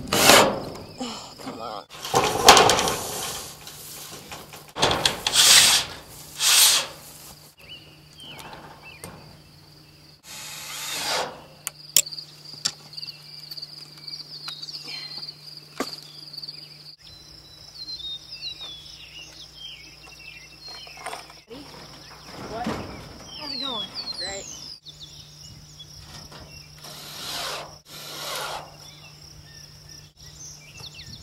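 Cordless drill driving screws into metal roofing panels in three short bursts. After that comes a steady chorus of insects with bird chirps and a few sharp knocks.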